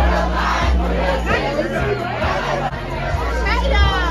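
Loud party music with a heavy bass line, under a packed crowd shouting and singing along, with a loud shout near the end.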